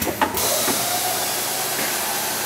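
Automated headlamp assembly machine at work: two sharp clacks of its actuators, then a loud, steady hiss of compressed air from about a third of a second in, with a faint whine underneath.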